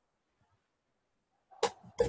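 Near silence, then two sharp knocks in quick succession near the end.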